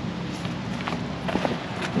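Footsteps on gravel, about four steps, over a faint steady low hum.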